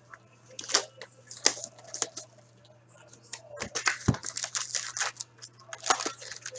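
A sealed cardboard box of hockey card packs being opened by hand: scattered tearing, scraping and crinkling of wrapper and cardboard, with a dull knock about four seconds in. Foil card packs rustle as they are pulled out near the end.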